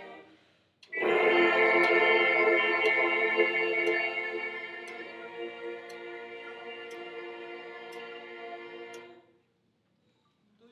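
A group of brass students buzzing on their mouthpieces alone, holding several pitches together as a sustained chord that starts about a second in, loud at first and softer from about halfway, then cutting off near the end. A metronome ticks about once a second underneath.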